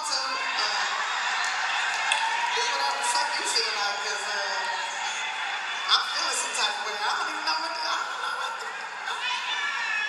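Indistinct, overlapping voices from a played-back recording of a live stand-up comedy show, the performer and the audience talking over each other.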